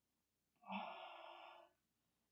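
A woman's audible breath, a sigh about a second long that starts sharply and fades, in an otherwise near-silent pause.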